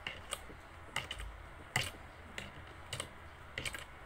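A pencil writing on paper on a wooden tabletop, giving short, irregular taps and scratches, about eight in all.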